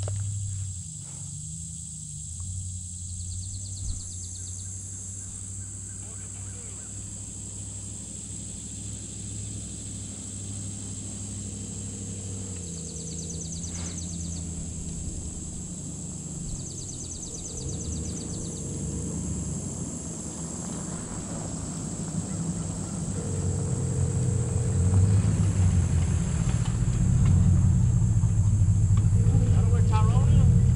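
Pickup truck driving on a dirt road: a low, steady engine and tyre rumble that grows louder over the last several seconds, with a steady high insect buzz behind it.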